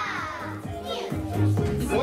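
Excited young children's voices, high and gliding, over steady background music.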